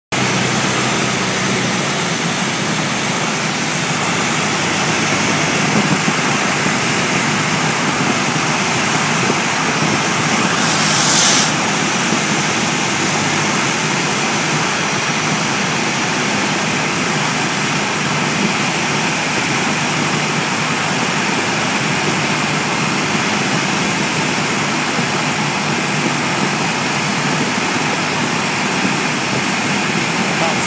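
Light aircraft engine and rushing airflow running steadily, heard inside the cockpit, with a brief louder hiss about eleven seconds in.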